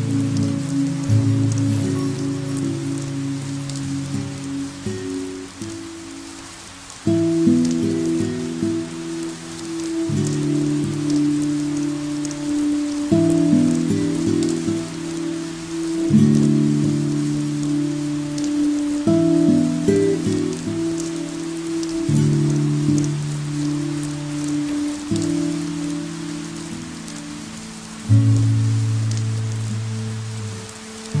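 Steady rain falling on a surface, mixed with slow ambient music. The music's sustained low chords are the loudest part and change about every three seconds.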